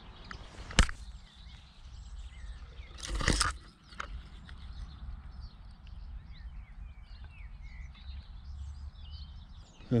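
Small warblers singing faintly in short, high chirps, with a sharp click about a second in and a brief burst of noise around three seconds in.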